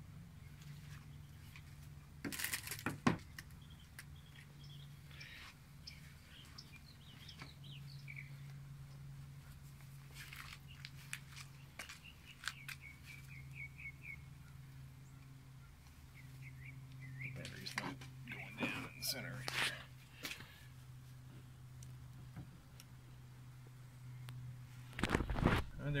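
Quiet handling sounds of a 9-volt battery and wire leads being set against thermite in a metal frying pan: a few short knocks and scrapes, over a steady low hum, with faint bird chirps in the middle.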